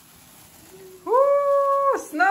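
A person's voice holding one long 'ooh' of delight for about a second, starting about a second in, sliding up into it and dropping off at the end.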